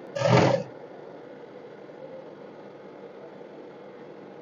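Industrial sewing machine running in one short burst of about half a second as the seam is finished, then only a faint steady hum.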